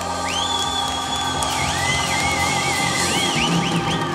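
Live rhythm-and-blues band holding a sustained chord at the close of a song, with high single tones that slide up, hold and then waver and arch over it.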